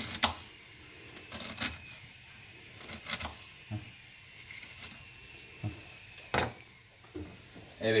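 Kitchen knife slicing through an onion and knocking on a wooden cutting board: about half a dozen separate knocks at an uneven pace, the loudest about six and a half seconds in.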